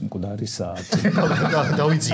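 Men's voices: brief speech, then about one second in a man's voice breaks into a long, quavering, non-word vocal sound that carries to the end.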